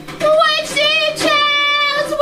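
A woman singing solo in a high voice: a wavering phrase, then a long held note from about a second in.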